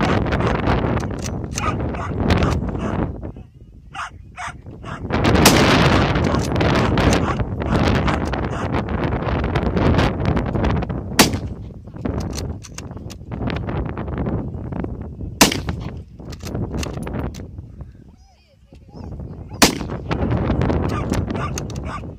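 Mosin-Nagant bolt-action rifle (7.62×54R) fired four times, sharp single shots about four to six seconds apart.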